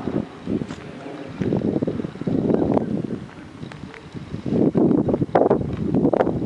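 Wind buffeting the microphone in irregular gusts.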